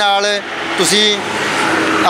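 A man speaking Punjabi close to the microphone, in short phrases with a held vowel near the end.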